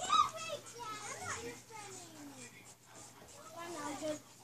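Children's voices chattering quietly, high pitches rising and falling, with one long falling vocal glide about two seconds in.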